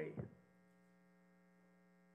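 Faint, steady electrical mains hum: one low tone with a thin buzz of overtones above it.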